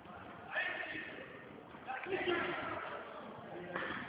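Faint, muffled voices and background murmur in a large room, with no close speaker.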